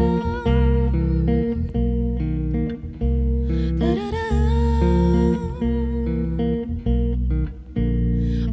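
Bass guitar playing sustained chords, with a woman's voice joining in a long held note that slides up into place about four seconds in.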